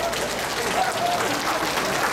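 Audience applauding, with voices heard over the clapping.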